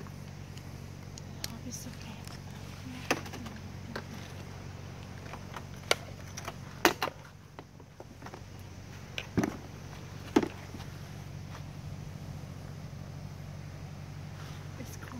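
Several sharp clicks and knocks, a few seconds apart, from handling a parked motor scooter, over a steady low hum.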